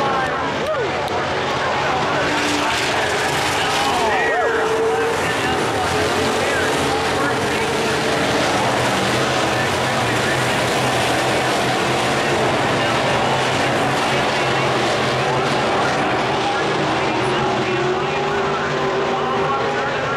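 Several dirt-track modified race cars' V8 engines running hard around the oval, a steady drone of overlapping engines whose pitch rises and falls as cars pass through the turns.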